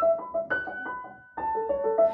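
Upright piano playing an inverted Alberti bass: a repeating broken-chord figure with the melody held on top. The notes are struck quickly in even succession, with a brief dip about two-thirds through before the pattern resumes. Recorded through a camera microphone.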